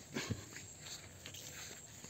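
Faint footsteps on a grassy path strewn with dry leaves, with a short low sound about a quarter second in.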